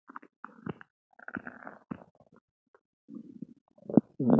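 Bloated stomach gurgling and rumbling with gas after Mentos, in irregular bursts of gurgles separated by short pauses, with a louder gurgle near the end.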